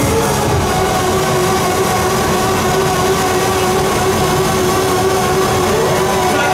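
Live electronic band music through a concert PA: a synthesizer chord held steady over a busy low end of drums and bass.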